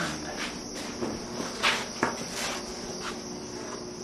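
Light handling noises of hands and measuring tools on a foam surfboard blank: a few brief scrapes and taps, over a steady high-pitched hiss.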